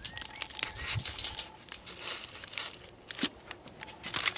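Aluminium foil crinkling in scattered small crackles as a thermometer probe is pushed through a foil-wrapped rib and the parcel is handled.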